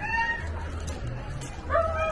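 A dog whining: a short high whine right at the start, then a longer, steady whine that begins near the end.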